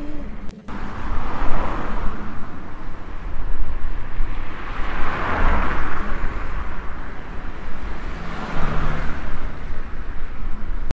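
Road traffic: passing vehicles whose noise swells and fades about three times over a constant low rumble, with a brief dropout just after the start.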